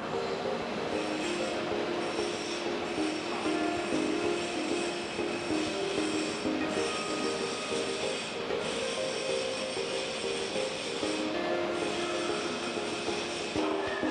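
The steady high-pitched whine and hiss of an H-beam plasma cutting machine at work, heard under background music.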